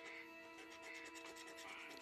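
Coin scratching the coating off a lottery scratch-off ticket: faint, quick repeated rubbing strokes. Faint background music of steady held tones runs underneath.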